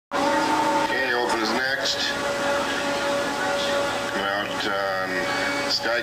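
A voice talking in two short stretches over a steady hum and a constant held tone.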